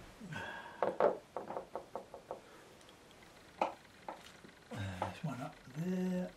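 Watercolour painting gear being handled: a quick run of light knocks and clicks, about five a second for a second and a half, then a couple of single clicks. A man's wordless murmur comes near the end.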